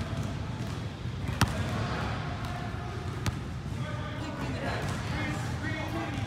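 A basketball bouncing twice on a hardwood gym floor, about two seconds apart, over faint background voices.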